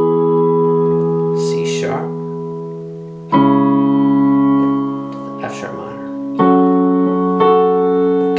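Digital keyboard in a piano voice playing sustained two-handed chords, each left to ring for about three seconds before the next is struck, then two in quick succession near the end. They are the song's B minor, E, C-sharp minor and F-sharp minor chords, with the right-hand and left-hand parts played together.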